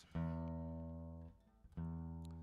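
Acoustic guitar's open strings strummed twice, about a second and a half apart, each chord ringing and fading away: checking the tuning while a tuning peg is turned.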